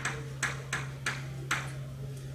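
Chalk tapping and clicking against a blackboard while words are written: about five sharp taps spread over two seconds, over a steady low hum.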